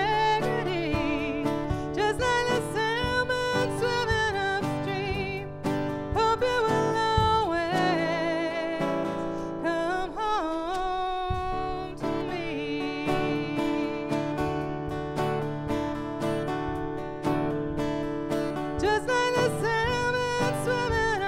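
A woman singing with vibrato into a microphone, accompanied by an acoustic guitar, in a live performance.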